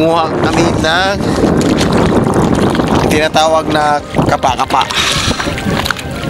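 Steady rush of wind on the microphone and water moving around someone wading in shallow sea, with short bits of voices over it.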